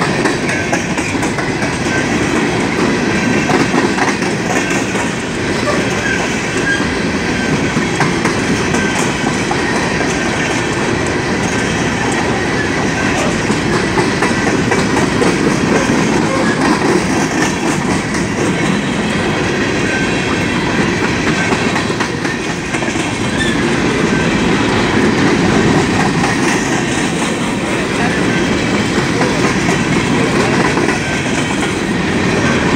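A BNSF coal train's string of aluminum coal gondolas rolling past at close range: a loud, steady rolling noise of steel wheels on the rails.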